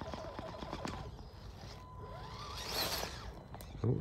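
Faint whine of a 1/10-scale Amewi Gallop 2 RC crawler's motor and gears, rising in pitch a little past the middle as throttle is applied, with scattered small clicks and a brief rustle of tyres in moss and twigs. The crawler is hung up on a log and not climbing.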